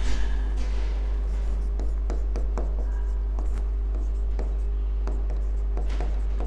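Handwriting on a green writing board: irregular short strokes and taps of the writing tip as words are written, over a steady low hum.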